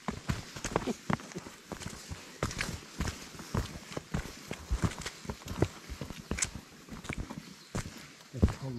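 Several hikers' boots stepping past close by on a dirt and rock track strewn with dry leaves and sticks: irregular crunches and knocks, one step after another.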